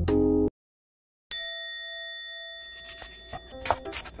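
Background music cuts off, a brief silence follows, then a single bright bell-like ding rings out and fades away over about a second. Light knocks of a knife on a wooden cutting board start near the end.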